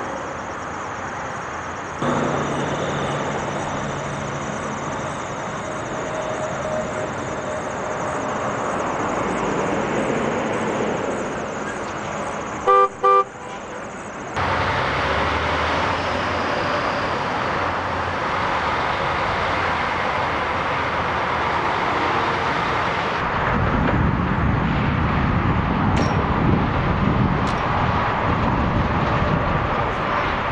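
Vehicle engines and road noise on a driving course, across several edited clips that cut abruptly. About 13 seconds in come two short horn blasts, the loudest sound. In the last part a semi truck's diesel engine runs close by with a heavy low rumble.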